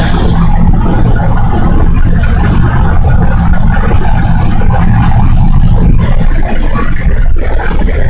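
Loud, steady low hum with a rumbling noise beneath it, unchanging throughout.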